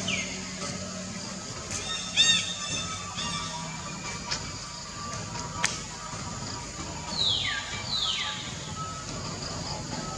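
Newborn long-tailed macaque giving high, thin whimpering cries: short arched wails at the start and about two seconds in, then two squeals that fall steeply in pitch around seven and eight seconds.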